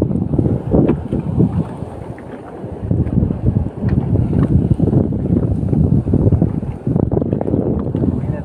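Wind buffeting the phone's microphone at sea: a loud, low, gusting noise that swells and dips.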